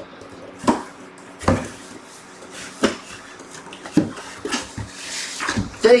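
A mystery box and its packaging being handled and opened: a few sharp knocks and taps spaced about a second apart, then rustling of paper and cardboard near the end.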